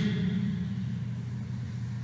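Room tone of a large hall picked up through a microphone and sound system: a steady low hum, with the echo of the last spoken words dying away in the first moments.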